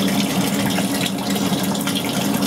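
Water discharging from a copper pipe through a swept elbow and falling through the air gap of a dry trap tundish: a steady rush of running water with a steady low hum beneath it.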